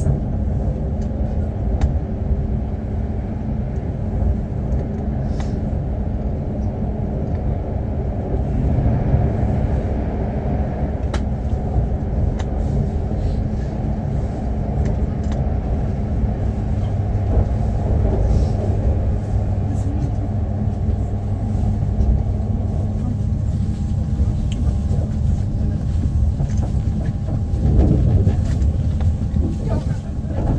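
Class 345 Elizabeth line electric train running at speed, heard from inside the carriage: a steady rumble of wheels on rail with faint clicks. It swells near the end as a freight train's wagons pass close alongside.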